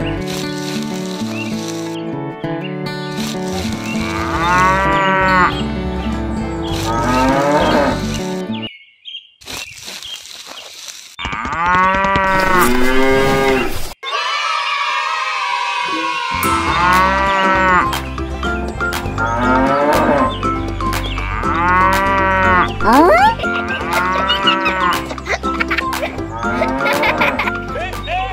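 Cows mooing, one call after another every second or two, with a short lull near the middle. Steady background music runs underneath.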